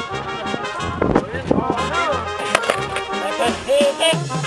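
Background music with brass horns playing, and people's voices underneath.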